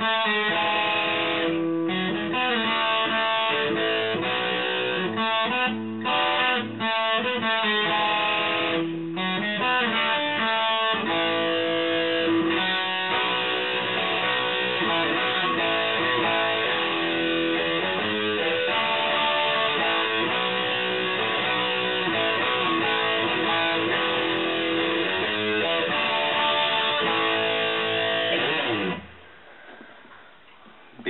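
Les Paul–style electric guitar picked with a pointed 1.5 mm V-Pick. It starts as a choppy riff broken by short gaps, then runs into continuous playing that stops about a second before the end.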